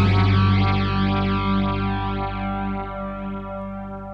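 The song's final chord, played on guitar with an effect on it over bass, left ringing and slowly fading out.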